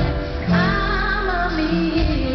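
Live soul-pop song: a woman singing, holding a note with vibrato for about a second, over a band with cajón percussion, recorded from the audience.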